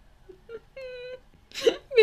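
A young woman's short, high-pitched whimpering squeal of embarrassed laughter, one held note of about half a second, followed by a brief breathy burst.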